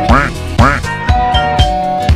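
Electronic house music with a steady kick-drum beat and a held synth note. Two short quack-like sounds come in quick succession near the start, each rising and then falling in pitch.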